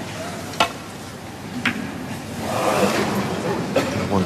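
Snooker balls clicking: the cue tip strikes the cue ball with a sharp click about half a second in, then ball-on-ball or ball-on-cushion clicks follow about a second later and again near the end, as a safety shot is played.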